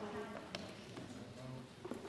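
Faint murmur of voices in a large parliamentary chamber, with two light clicks, about half a second in and near the end.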